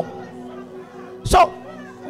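Soft held chords on an electronic keyboard, with one short, sharp burst of sound about a second and a half in.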